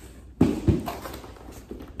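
Cardboard boxes being handled during unboxing, with two dull knocks about a third of a second apart, then soft rustling.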